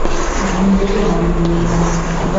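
A motor vehicle engine running, a steady low drone.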